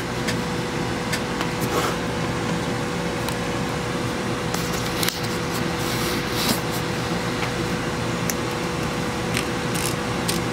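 Stryker SR-655 CB radio's receiver hissing steady static through its speaker, with a faint steady hum under it and occasional light clicks as the channel knob is handled.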